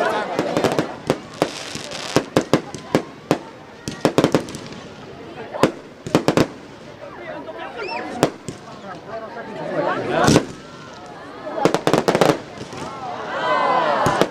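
Aerial fireworks bursting: a series of sharp bangs and crackles in irregular clusters, the loudest burst about ten seconds in.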